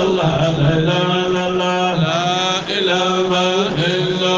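Male voices chanting a Sufi devotional qasida in long, held melodic lines.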